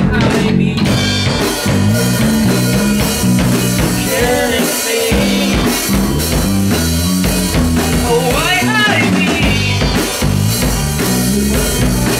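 Live indie rock band playing: electric guitar, bass guitar and drum kit at full, steady volume, with a male singer's sung phrases coming in now and then over the band.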